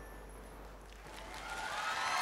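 The last faint notes of the song dying away, then audience applause and cheering starting to swell about a second in.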